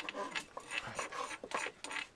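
A large kitchen knife slicing red onions on a cutting board, in short, rhythmic strokes of about three or four a second.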